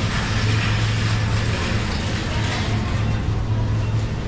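Supermarket ambience: a steady low hum under the general noise of the store, with no clear single event.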